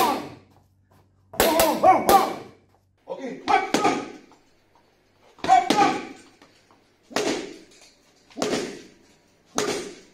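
A wooden Eskrima stick striking, about six times at an even pace of roughly one hit every second and a half, each hit sudden and joined by a short shout from the fighter.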